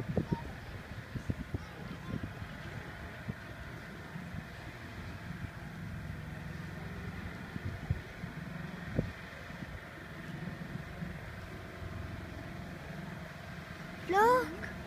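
Avro Lancaster's four Rolls-Royce Merlin engines running, a steady low drone heard at a distance as the bomber moves away down the runway. Occasional low thumps of wind on the microphone.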